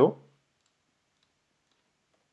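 A man's spoken word ends at the very start, then a few faint, scattered clicks of a computer keyboard as a short word is typed.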